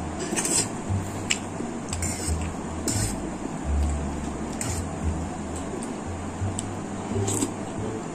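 A metal fork clicking and scraping against a food tray while spaghetti is eaten, with mouth sounds of eating, over background music with a pulsing bass.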